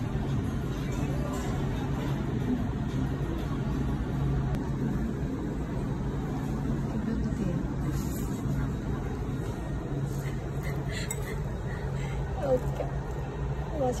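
Dining-room background: a steady low hum, like air-conditioning or equipment, under faint murmur of voices.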